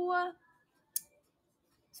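A woman's drawn-out spoken "so" trailing off, then near quiet broken by a single short, sharp click about a second in.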